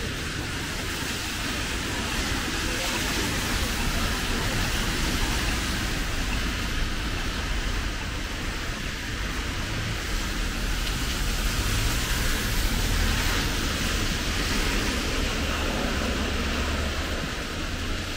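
Steady hiss of rain with cars driving past on a wet street, their tyres on the water and a low engine rumble that swells around the middle.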